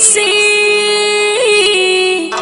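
Pashto folk song: a woman's singing voice holds one long note with small ornamental turns about one and a half seconds in, over the accompaniment.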